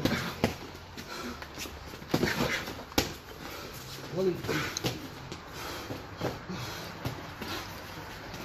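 Boxing gloves striking gloves and headgear during sparring: irregular sharp thuds, the loudest about three seconds in.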